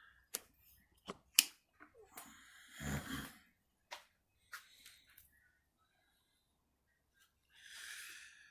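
Handling noise of a camera being taken off its tripod and carried by hand: a few sharp clicks and knocks in the first second and a half, the loudest about a second and a half in, then scattered rubbing and ticks. Close breathing near the microphone, a heavy breath about three seconds in and a breathy hiss near the end.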